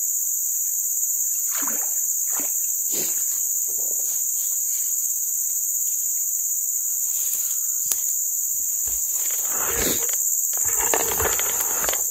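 Steady high-pitched chorus of forest insects, with a few short splashes and rustles as a hooked fish is pulled from the water and handled.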